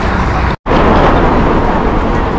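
Loud street traffic noise, a steady rumble, broken by a split-second gap of silence about half a second in.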